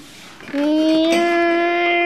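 A boy's voice holding one long, steady sung note, starting about half a second in.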